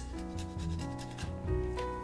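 A block of Parmesan cheese grated on a flat handheld metal grater: a run of quick scraping strokes, fairly quiet, over soft background music.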